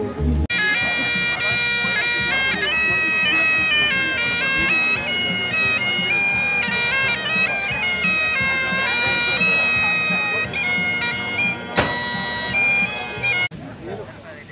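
Highland bagpipes playing a tune: a changing melody over steady held drones. It starts abruptly about half a second in and cuts off shortly before the end, with one sharp knock a couple of seconds before it stops.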